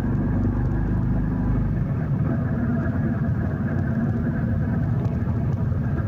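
Motorcycle engine running while being ridden at a steady pace, heard from the rider's seat as a continuous low drone; the deepest part of it eases off about two seconds in.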